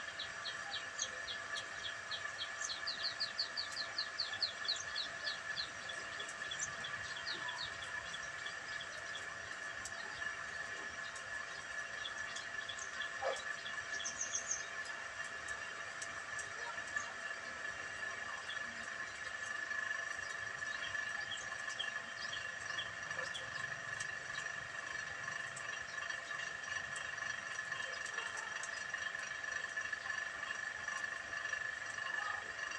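Birds chirping in quick repeated series, busiest in the first few seconds and sparser afterwards, over a steady high-pitched whine.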